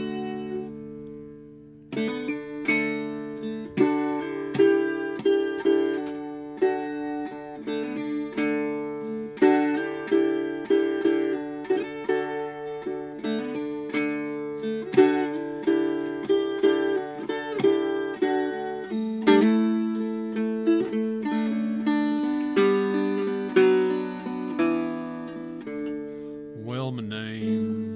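Lap dulcimer played solo: a chord struck at the start and left to ring, then, about two seconds in, a picked melody over steady droning strings, the low note of the drone shifting about two-thirds of the way through.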